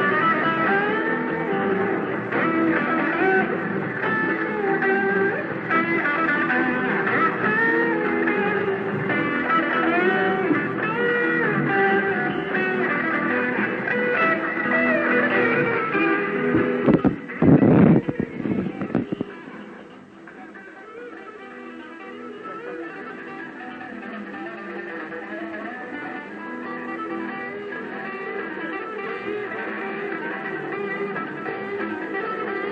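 Live rock band jamming on electric guitars and bass, dense and busy. About seventeen seconds in come a few very loud low hits, then the music drops to a quieter, sustained sound that slowly swells.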